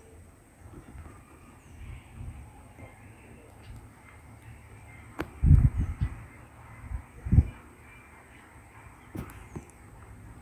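Outdoor background noise with a few short low thumps, the loudest about five and a half and seven and a half seconds in, and faint bird calls.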